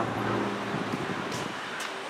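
Steady outdoor background noise with a low traffic hum that eases off within the first second, and a couple of faint clicks in the second half.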